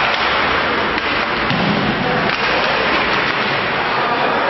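Ice-rink game ambience during play: a loud, steady hiss-like wash of noise with a few faint sharp clicks.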